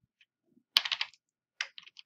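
Typing on a computer keyboard: a quick run of keystrokes a little before the middle, then a few more near the end.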